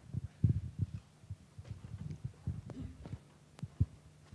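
Irregular soft low thumps and knocks over a faint steady hum, with one sharp click near the end: handling and movement noise picked up by the lecture-hall microphone.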